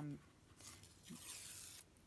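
A strip of old book page being torn off along the edge of a steel ruler, a steady rip lasting about a second and a half that stops just before the end.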